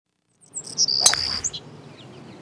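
A bird chirping, starting about half a second in: a few short high notes and a held high whistle of about half a second. A low steady outdoor background runs under it.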